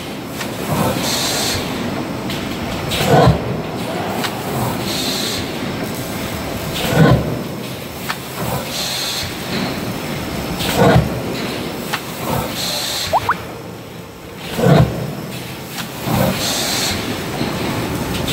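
Automatic pulp-moulding egg tray forming machine running through its cycle about every four seconds: a heavy clunk, then about two seconds later a short hiss of air, over a steady machine noise.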